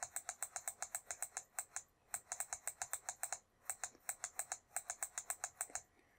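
Rapid, evenly spaced mouse clicks, about seven a second, in three runs with short breaks about two and three and a half seconds in. They are the clicks that step a TI-84 emulator's trace cursor point by point along a graph.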